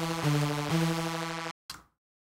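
A crunchy synthesizer lead playing in stereo, stepping through a few sustained notes, then cutting off sharply about one and a half seconds in as playback stops.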